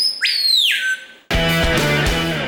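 A songbird whistling two clear notes, each sweeping sharply up and holding high, the second sliding down at its end. About a second later a strummed guitar chord of music starts suddenly.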